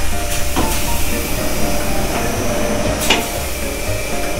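Wet barrel-polishing machine running: a Honda CBX400F wheel turns on its spindle through foamy ceramic finishing media in the drum. It makes a steady low hum and wash of noise, with a few sharp clicks.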